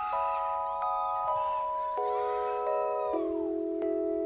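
Electronic keyboard playing a slow run of held chords that steps downward about once a second, with a few sliding higher notes over it and no drums.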